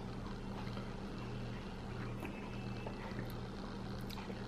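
A steady low hum in a quiet room, with a few faint ticks.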